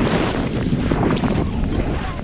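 Wind buffeting a GoPro's microphone as the skier moves downhill: a steady, low rushing noise.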